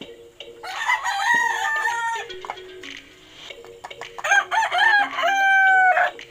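Rooster crowing twice: one crow about a second in, and a second crow starting about four seconds in that ends in a long held, slightly falling note.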